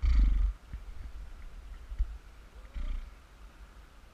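Two short gusts of air rumbling on the microphone at a trumpet's bell, one at the start and a shorter one about three seconds in, with a single light click between them.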